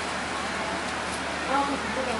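Steady hiss of light rain falling outdoors, with faint voices of people talking in the background.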